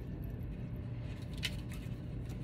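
Quiet room tone with a steady low hum, and a single faint click about one and a half seconds in as an oracle card is drawn from the deck.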